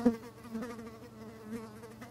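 A housefly buzzing around, its drone swelling and fading as it moves nearer and away, loudest right at the start.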